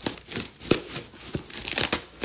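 Cardboard shipping box being torn open by hand, without scissors: irregular tearing and crinkling with several sharp cracks, the sharpest a little under a second in.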